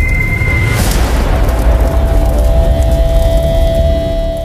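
Cinematic intro sound design: a loud, deep rumble throughout, a swish just under a second in, then a single held tone over the rumble.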